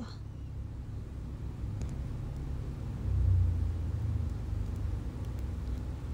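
A low, steady rumble that swells about three seconds in and then eases back.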